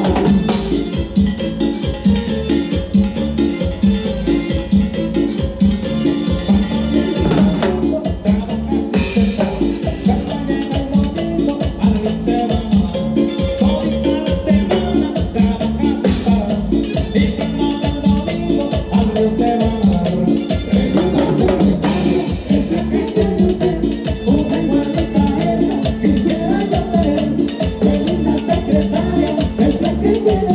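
Live Latin dance-band music with timbales and cymbals over a steady driving beat, with two cymbal crashes about nine and sixteen seconds in.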